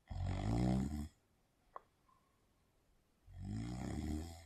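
A man snoring: two long snores about three seconds apart, with a faint click between them.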